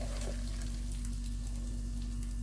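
A steady low electrical hum under faint, scattered light crackles as crispy fried shallots are sprinkled by hand over a plated fish dish.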